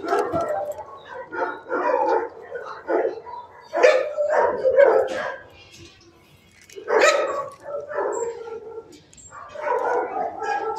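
Dogs barking in bursts, with a short quiet lull a little past the middle before the barking starts again.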